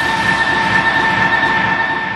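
A train passing close by: a loud rumble carrying a steady high whine, fading away near the end.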